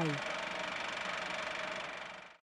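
Steady hiss and drone with faint held tones, fading away near the end, just after an announcer's voice finishes its last syllable at the very start.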